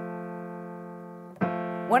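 A note on a grand piano being tuned, struck and left to ring, fading slowly. It is struck again about one and a half seconds in.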